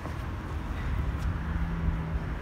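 Wind buffeting a phone microphone, a low rumble, with a faint steady hum coming in about halfway through.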